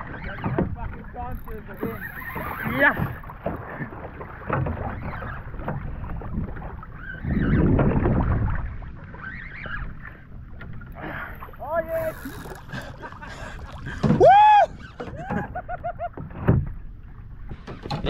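Water sloshing around a fishing kayak, with wind on the microphone, swelling for a second or so midway. About fourteen seconds in comes a short, loud cry that rises and falls in pitch, with a fainter one a few seconds earlier.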